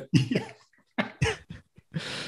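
A few short, separate vocal bursts from a man, about four in two seconds, the kind of sound given off by chuckling or coughing rather than speech.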